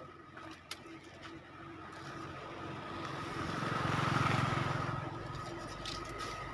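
A motor vehicle passing by: its engine and road noise swell up over a couple of seconds, are loudest a little past the middle, then fade away.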